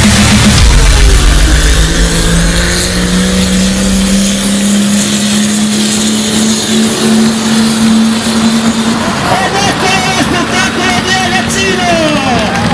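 Pulling tractor's engine at full throttle as it drags the weight sled past at close range: a heavy rumble that thins into a steady drone, rising slightly in pitch and running on until about nine seconds in. A public-address announcer's voice then takes over.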